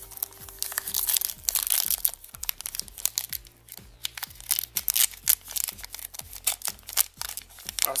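Foil wrapper of a Pokémon trading-card booster pack being torn open and crinkled by hand, a dense, irregular run of sharp crackles.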